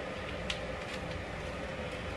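Quiet room tone with a faint steady hum and a single soft click about half a second in.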